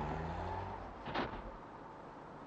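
A car engine running and fading away, as if pulling off and receding, gone by about a second and a half in. A short sharp click about a second in.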